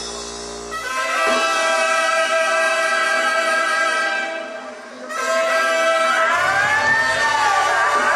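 A live tierra caliente band playing the opening of a song: held brass chords, which dip briefly about halfway, then come back with bass underneath and a gliding melody line near the end.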